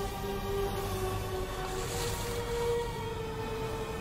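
Film soundtrack: sustained held music tones over a steady low rumble.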